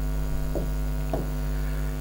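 Steady electrical mains hum: a low, even buzz that holds unchanged through the pause in speech.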